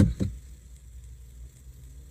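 Low, steady rumble in a car's cabin during a pause in a man's speech, with the tail of his last words at the very start.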